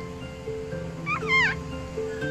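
A newborn toy poodle puppy gives one short, high squeal about a second in, rising and then falling in pitch, over background music with sustained notes.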